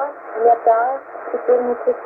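Russian-language aviation weather report (Rostov VOLMET) heard through a Tecsun PL-990 shortwave receiver tuned to 11297 kHz in upper sideband. The voice is narrow and thin over a steady hiss of static.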